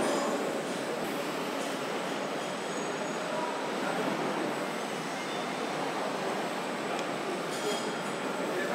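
Steady running noise of car-factory assembly-line machinery, an even rumble and hiss with faint high whines over it.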